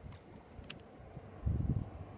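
Wind buffeting the microphone, a low rumble with a stronger gust just past the middle, and a single faint click about a third of the way in.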